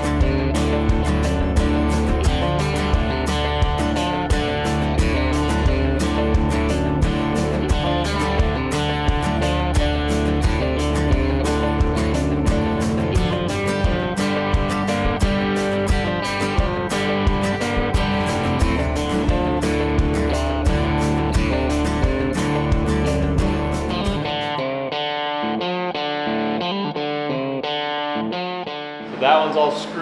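Guitar-led background music with a steady beat. About 25 seconds in, the bass drops out and the top end is cut away, so the music turns thin and muffled for the last few seconds.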